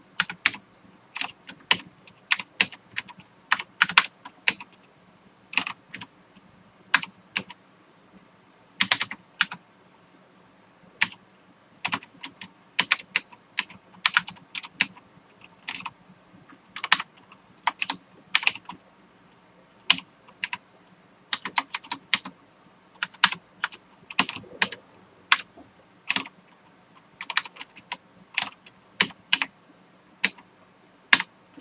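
Typing on a computer keyboard: keystrokes in irregular bursts with short pauses between them.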